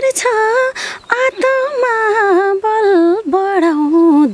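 A woman singing a slow Nepali song unaccompanied, in long, ornamented held notes that waver and slide in pitch.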